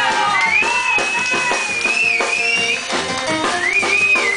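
Live jazz band playing: a nylon-string acoustic guitar with drums and bass, and a high, gliding melody line over the top.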